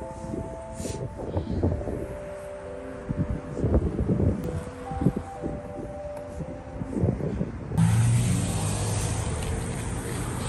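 Soft background music with sustained notes, then about eight seconds in a sudden cut to city street traffic: cars passing, with wind on the microphone.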